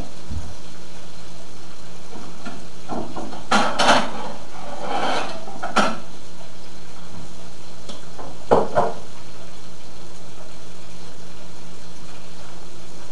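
A plate and utensils knock and clink in three short clusters as dishes are handled. Under them runs the steady sizzle of fish frying in oil.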